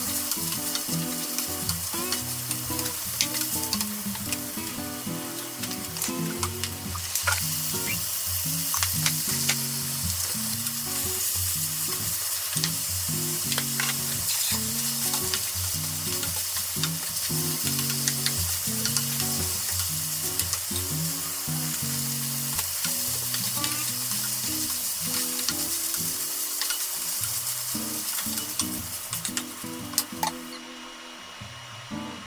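Minced meat and squeezed cabbage sizzling in a frying pan, stir-fried until their water cooks off, with frequent clicks and scrapes of a wooden spatula against the pan. Background music plays underneath.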